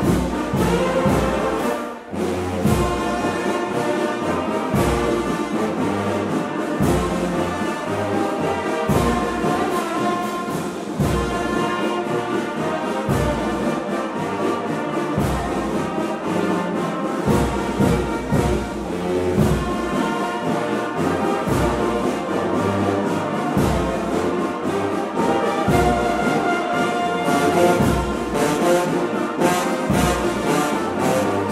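Brass band music: several brass instruments playing held chords over a regular low beat, dropping out briefly about two seconds in.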